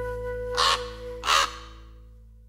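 Two harsh raven caws, the second slightly louder, less than a second apart, over the last held chord of the music fading away.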